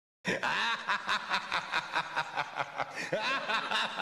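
Snickering laughter in quick short bursts, several a second, breaking in abruptly a quarter second in after total silence.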